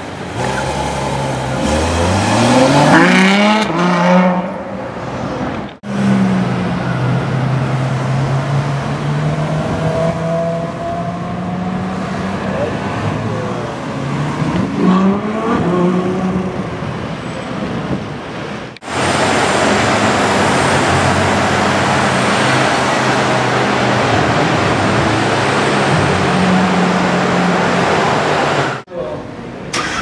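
Ferrari F12 Berlinetta's V12 engine accelerating, its revs climbing steeply and then dropping at a gear change, then running on with another climb in revs. Later a steady hiss sits over the engine.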